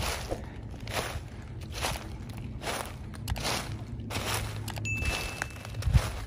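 Footsteps crunching through a deep layer of dry fallen leaves at a steady walking pace, about one step a second.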